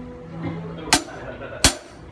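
Two single stick strokes on a drum kit, about three quarters of a second apart, the second with a deeper low end.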